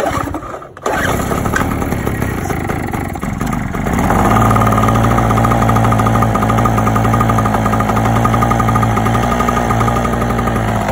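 Chicago portable generator's small two-stroke engine on a cold start. A pull of the recoil cord, then it catches about a second in and runs unevenly. About four seconds in it grows louder and settles into a steady run, with its leaking carburetor patched with duct tape and zip ties.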